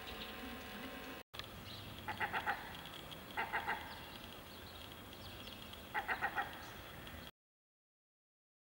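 Three short runs of a bird's call, each three or four quick notes, over a steady outdoor background hum. The sound cuts off abruptly a little after seven seconds.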